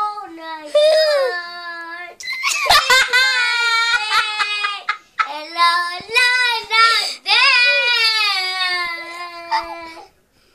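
A young girl singing without words the recogniser could catch, in three phrases, each ending on a long held note.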